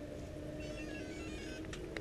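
A faint electronic melody of short notes stepping downward in pitch, over a steady low hum.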